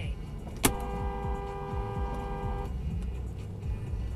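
Car horn sounding one held two-tone note for about two seconds, starting sharply and cutting off abruptly: a warning honk at a vehicle cutting in during a close call in a roundabout. Steady low road and engine rumble from inside the car runs underneath.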